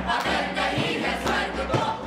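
A mixed group of young men and women singing a chant loudly in unison, with a few sharp percussive beats.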